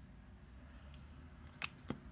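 Faint low room hum, then two short sharp clicks about a quarter second apart near the end.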